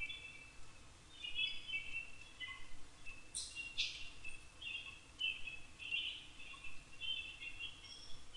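Faint bird chirps, short calls repeating again and again, with two sharper calls a little over three seconds in.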